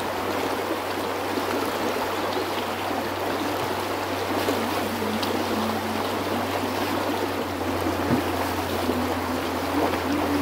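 Shallow, fast creek rushing over rocks: a steady, dense wash of running water.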